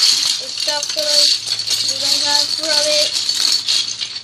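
A hand rummaging through a loose heap of plastic building bricks: a continuous clattering rattle of many small bricks knocking against each other.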